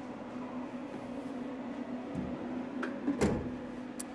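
Steady low hum from the photopolymer processing unit, with a soft knock about two seconds in and a louder clatter a little after three seconds as the clear plastic film negative is lifted off the exposed sheet.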